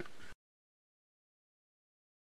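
Silence: a brief moment of faint outdoor ambience with a click, then the sound track cuts out completely.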